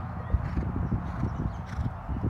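Hoofbeats of a horse cantering on a sand arena, a run of irregular dull thuds with one sharper knock about a third of a second in.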